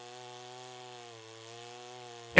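FARMMAC F660 chainsaw, a large two-stroke saw, running under load as it cuts through a large log. It is fairly faint and steady in pitch, sagging slightly around the middle before picking back up.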